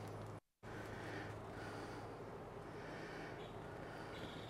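Quiet background: a steady low hum with faint hiss, broken by a brief total dropout about half a second in.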